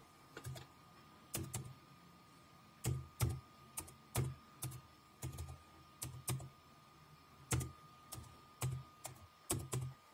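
Slow, one-key-at-a-time typing on a computer keyboard: about twenty separate key clicks at uneven intervals, with short pauses between small runs of keys.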